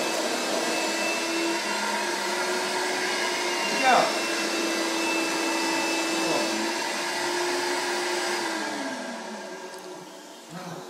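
An electric motor running steadily with a constant hum, then falling in pitch and fading out near the end as it spins down. A short, loud sound with a falling pitch about four seconds in.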